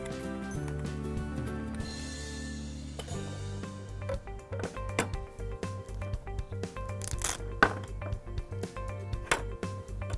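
Background music, with short plastic clicks and knocks in the second half as a Baby Annabell toy doll's high chair is snapped together and set on a wooden table.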